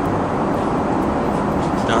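Airbus A380 cabin noise in flight: a steady, even rush of airflow and engine noise with no break, fairly loud.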